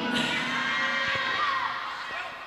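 Audience cheering and calling out in response to a Quran recitation phrase, the voices fading away over the two seconds.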